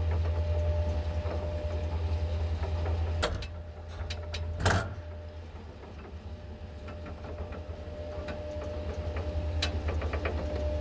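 Classic ASEA traction elevator car travelling in its shaft: a steady low hum with a faint steady whine. Two sharp clicks come a little over three seconds in and just under five seconds in; the hum dips after the first and builds again toward the end.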